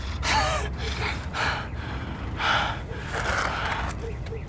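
A man breathing heavily in ragged gasps, about five breaths, over a low steady rumble.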